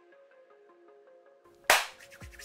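Soft background music of single plucked notes, then one loud, sharp hand clap near the end.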